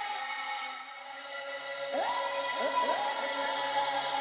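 Melodic synthesizer outro of a hip-hop beat, with no vocals: held synth notes, with a few notes sliding up in pitch about halfway through and a low sustained tone coming in near the end.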